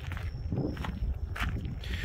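Footsteps on a gritty paved lot, a few irregular steps, over a low steady rumble.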